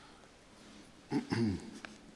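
A pause with faint room tone. About a second in, a man's voice makes two short sounds that fall in pitch, followed by a faint click.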